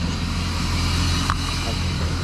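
Steady motor-vehicle noise, a low hum under an even hiss, with a brief click a little past halfway.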